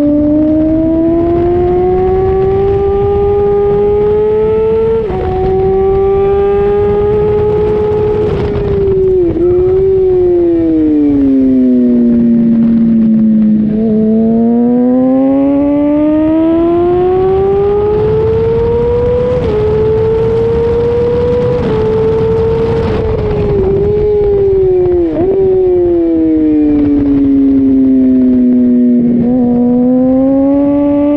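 2005 Honda CBR600RR's inline-four engine at high revs, rising in pitch as it accelerates with a quick upshift about five seconds in and again near twenty seconds, and falling twice as it slows for corners, with short dips at the downshifts. Wind rush on the microphone runs underneath.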